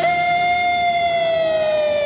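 A single long held note, rich in overtones, sliding slowly down in pitch.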